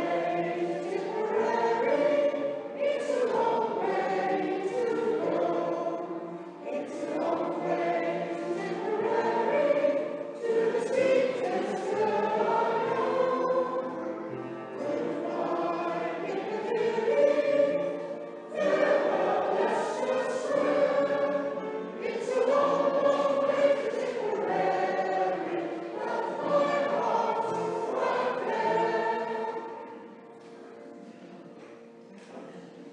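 An amateur choir of mixed men's and women's voices singing a song together, the singing stopping right at the end.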